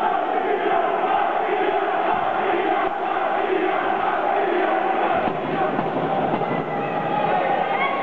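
Crowd of boxing spectators: many voices talking and calling out at once in a steady din.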